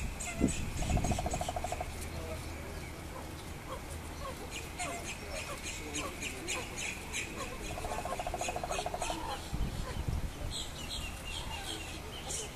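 Background birds chirping, with many quick high chirps and two short rattling trills, one about a second in and one about eight seconds in. A low thump about half a second in is the loudest moment, and faint voices lie underneath.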